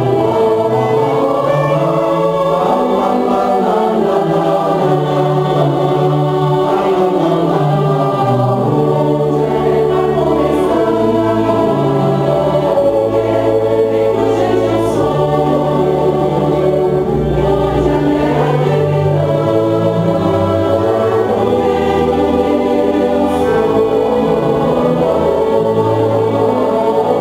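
Mixed choir singing a slow piece in sustained chords, accompanied by a small string orchestra of violins, viola, cello and double bass holding low notes beneath the voices.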